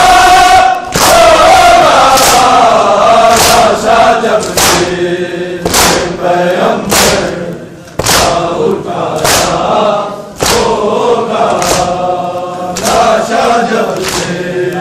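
A crowd of men chanting a noha together, marked by loud unison slaps of hands on bare chests (matam) about once a second.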